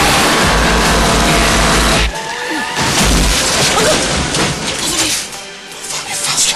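Loud soundtrack music with a heavy low beat that cuts off abruptly about two seconds in, giving way to quieter, sparser sound with some voices.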